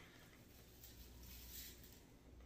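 Near silence, with faint soft rustling of dry seasoning being shaken from a shaker can onto a raw turkey.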